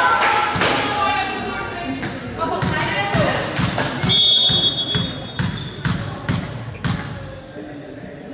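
A volleyball bounced repeatedly on a sports hall floor, a series of knocks, with a referee's whistle blown once about four seconds in to call the serve. Players' voices carry through the hall in the first seconds.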